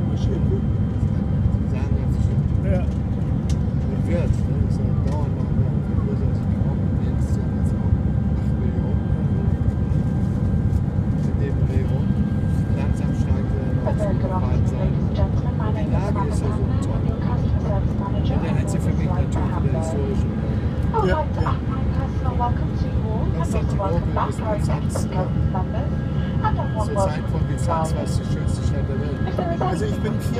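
Steady low drone of an airliner cabin in flight: engine and airflow noise, even in level throughout. Indistinct voices talk underneath it, more from about halfway through.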